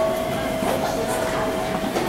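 Elevator arrival chime: one steady tone held for about two seconds as a KONE MiniSpace traction elevator car arrives and its doors slide open.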